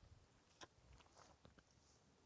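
Near silence, broken by a few faint clicks and rustles: a sharp one about half a second in and a small cluster around a second and a half.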